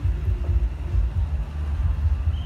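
Wind buffeting the microphone: a loud, uneven low rumble that flutters in strength.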